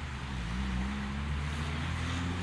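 Car engine running steadily with a low hum, its pitch dipping slightly and rising again early on.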